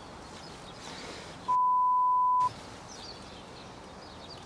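A single steady, high beep lasting about a second, starting about one and a half seconds in, with the background audio muted beneath it: a broadcast censor bleep. Faint outdoor background noise runs before and after it.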